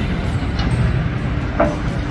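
Steady low engine rumble of heavy machinery and traffic, with a brief vocal sound near the end.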